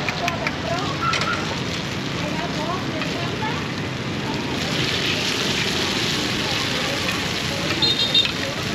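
Num kruok batter sizzling steadily in multi-cup pans over a charcoal fire, a continuous hiss, with background voices under it. A short high ring sounds near the end.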